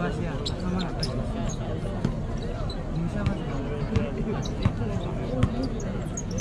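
A basketball bouncing on an outdoor hard court during play: irregular short thumps as it is dribbled and passed, the sharpest a little after five seconds in, over the continuous chatter of a watching crowd.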